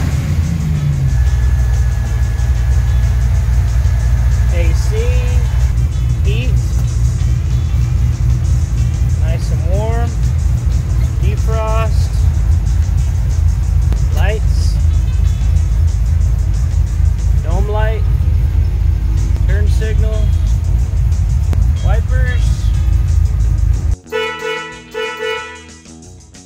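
LS-swapped V8 engine of a 1954 GMC pickup idling, heard from inside the cab: a loud, steady low rumble with short rising chirps above it every second or two. It cuts off near the end and gives way to music.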